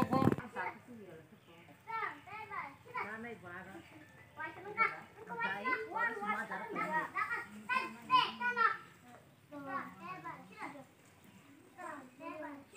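Children's voices talking and calling out.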